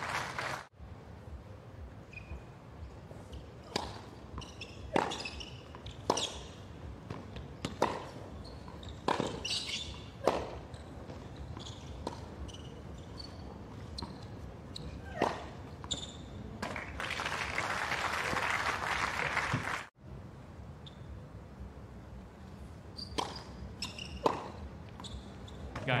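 Tennis racquets striking the ball in rallies on a hard court, a sharp pop roughly every second. Crowd applause swells for about three seconds about two-thirds of the way through. The sound cuts out abruptly twice at edits.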